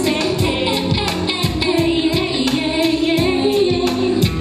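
A woman singing into a microphone over backing music with a steady beat.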